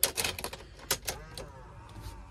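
Car key going into a Nissan X-Trail's ignition switch, with its keyring jingling: a quick run of clicks in the first second, then a faint steady tone.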